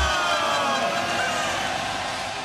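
Whoosh-type transition sound effect of the intro: a noisy rush with a slowly falling pitch, gradually fading out.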